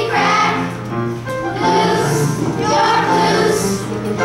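Children's choir singing, in phrases of held notes with a short break just after a second in.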